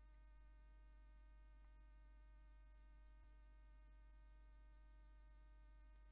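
Near silence: a faint, steady electrical hum made of several even tones.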